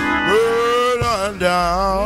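Music: a voice singing held notes with vibrato over instrumental accompaniment.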